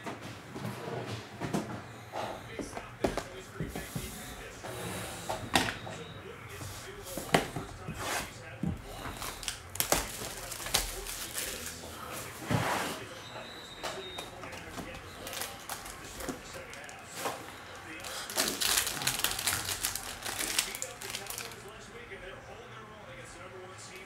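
Trading-card hobby boxes and packs being handled and opened: scattered taps, knocks and clicks of cardboard and plastic on a table. Near the end comes a denser stretch of wrapper crinkling as a pack is torn open.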